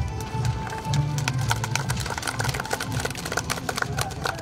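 Music playing, with scattered hand claps from a crowd that thicken into applause about a second in.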